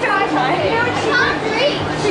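Young girls' voices talking and calling out, not clearly worded, over a steady low hum.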